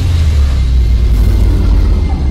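A deep, steady rumble with faint music over it: the sound effect of an animated outro graphic, leading into dark soundtrack music.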